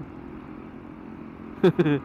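Motorcycle under way at a steady speed: a steady low engine and road rumble, with a man's voice cutting in briefly near the end.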